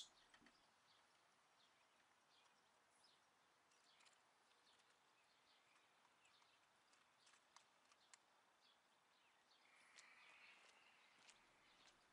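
Near silence: faint outdoor background with a few scattered, faint high chirps.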